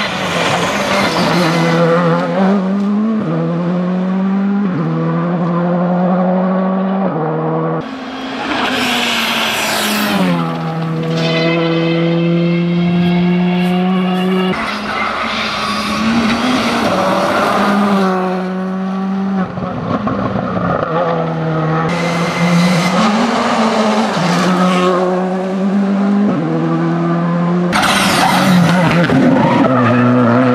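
Škoda Fabia rally car engine at full throttle over several passes, its pitch climbing and dropping sharply at each gearshift, sometimes held steady. Three or four loud hissing bursts of tyre and gravel noise break in as the car slides through corners.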